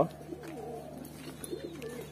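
Giribaz pigeons cooing quietly, low wavering coos from the caged birds.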